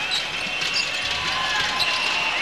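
Basketball game sound in an arena: a steady crowd din with a ball being dribbled on the hardwood court.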